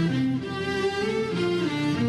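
Instrumental introduction of a Turkish classical song in makam Muhayyer Kürdi, played by an ensemble led by bowed strings such as violins and cellos, the melody moving from note to note in a smooth, sustained line.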